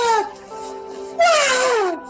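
A voice wailing in long downward pitch slides over music with a steady held chord: one slide trails off shortly after the start, and a second, loud one begins a little past the middle and falls away.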